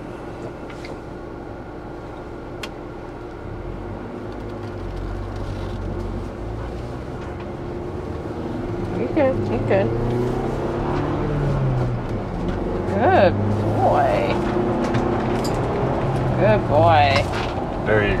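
Ford Bronco under way, its engine and road noise heard from inside the cabin, growing louder over the stretch as it gathers speed, with a rising and falling engine hum in the second half.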